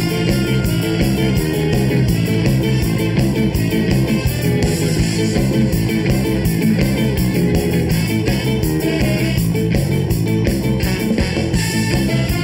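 Ska band playing live: a tenor saxophone carries the melody over electric guitar, bass and drums at a steady beat.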